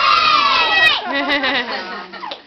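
A group of young children shouting together in one long held cry that breaks off about a second in, followed by quieter single voices.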